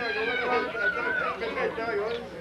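Several people talking at once, overlapping casual chatter between songs.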